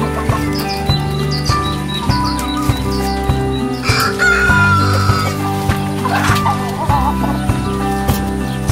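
A rooster crows once, about four seconds in, a call about a second long, and chickens cluck a little later, over steady background music.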